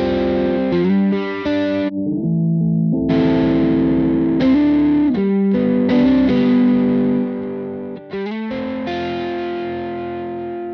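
Distorted electric guitar playing sustained chords while an EQ boost is swept across it during mixing; the top end cuts out for about a second near two seconds in.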